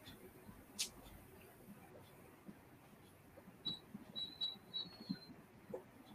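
Quiet room tone broken by one sharp click a little under a second in, then a quick run of about five short, high-pitched beeps or squeaks a little past the middle.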